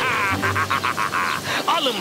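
A cartoon character laughing: a fast run of short cackles that fades out about halfway through.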